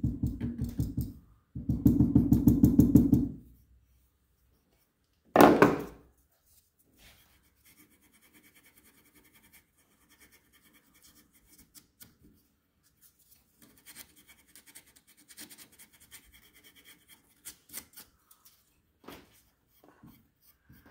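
A small hand shaping tool worked in fast back-and-forth strokes against a grand piano hammer's knuckle, in two short runs, to smooth the knuckle. One sharp knock comes about five seconds in. After it there are faint light clicks and scratches from the wooden hammer shanks of the action being handled.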